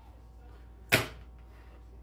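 A single short, sharp snap about a second in, against a faint steady room hum.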